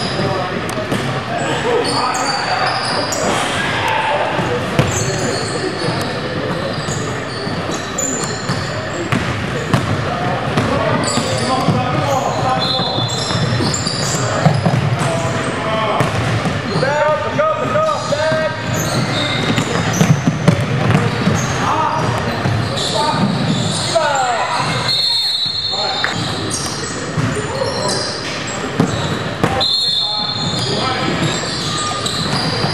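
A basketball being dribbled on a hardwood court, with players' voices calling out and a few short high squeaks, all echoing in a large gym.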